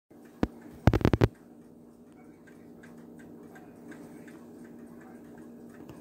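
A single sharp click, then a quick run of about five loud knocks a second in, followed by a faint steady hum with scattered light ticks.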